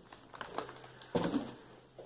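Plastic shrink-wrap around a six-pack of dish detergent bottles crinkling as the pack is grabbed and moved. There are faint rustles early on, and a louder, brief handling noise a little after one second.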